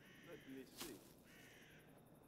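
Crows cawing faintly, two calls about a second apart.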